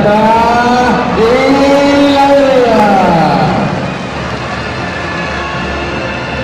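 A man's voice calling out in long drawn-out notes that slowly rise and fall in pitch for the first three and a half seconds or so, over a steady hum of crowd noise from the stands that carries on alone afterwards.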